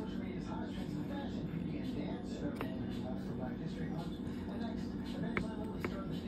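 A few sharp clicks as a used reusable plastic coffee pod is pried open and handled, over a steady hum and indistinct background voices.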